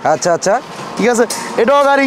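Speech: a person talking.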